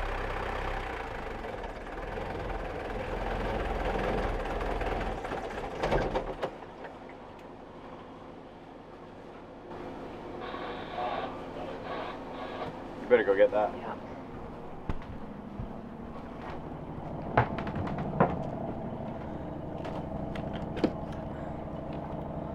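Volvo Penta marine diesel starting up and running steadily, then cutting out about six seconds in. This is the starboard motor with a fuel-supply problem that keeps it from running.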